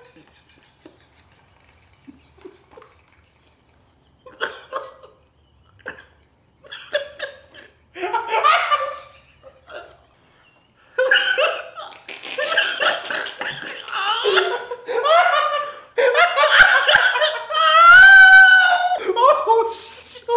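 Two men laughing. It starts nearly quiet, turns into scattered short chuckles, then from about halfway becomes loud, unbroken belly laughter. A long high-pitched squeal comes near the end.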